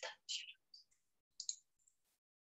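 A few faint, short clicks with silence between, heard through a video-call connection: a computer mouse being clicked to start a screen share.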